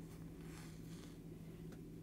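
Faint rustle of hands handling a crocheted acrylic yarn beanie, over a steady low hum.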